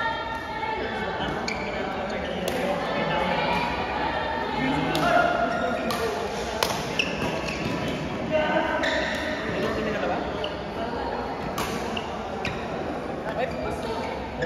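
Badminton racket strings striking a shuttlecock again and again during a doubles rally: sharp pops at irregular intervals, about a second apart, echoing in a large hall.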